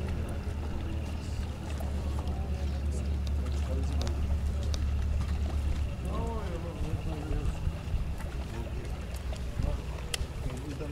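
A low, steady engine rumble that falls away about six seconds in, under the voices of people talking nearby.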